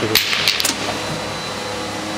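Tomato sorting line running with a steady mechanical hum and hiss from the conveyor and Odenberg optical sorter. There are a few short, sharp hissing bursts in the first half second, then it settles to a steady drone.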